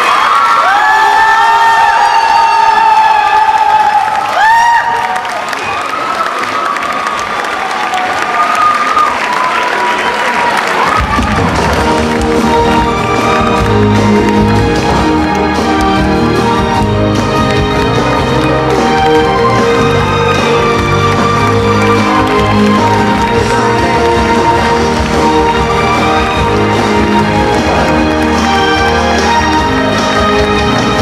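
Audience cheering, with long shouted calls over the crowd, for about the first ten seconds; then a backing track for a stage musical number starts with a bass line and a steady beat and plays on.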